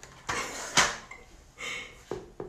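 A woman's short breathy laugh: two puffs of breath with no words, the first and louder in the first second, a smaller one near the end.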